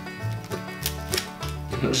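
Background music with a repeating bass line. Over it come a few faint crackles as the crisp crust of a loaf of bread is torn apart by hand; they don't come through much.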